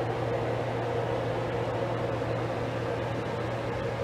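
Steady low hum with an even hiss over it; nothing else happens.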